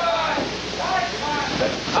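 Voices speaking briefly, several times, over a steady rushing background noise.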